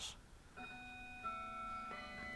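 Faint music from a keyboard instrument, organ-like: several sustained notes held together, entering about half a second in, with another note added about a second in.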